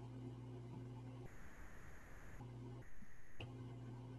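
Faint room tone on a video-call line: a steady low hum with a faint hiss that cuts out twice, each time for about a second.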